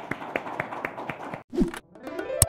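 Audience applause: many scattered hand claps, cut off abruptly about three-quarters of the way through, followed by a brief low falling blip.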